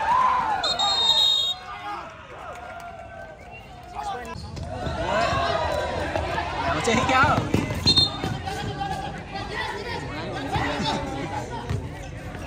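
Voices of players and spectators shouting and talking over a basketball game, with a ball bouncing on the court. Two brief shrill high tones stand out, near the start and about eight seconds in.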